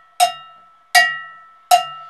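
Cowbell struck three times on the beat, evenly about three-quarters of a second apart (80 beats per minute), each stroke ringing out and dying away: a cowbell-type metronome click.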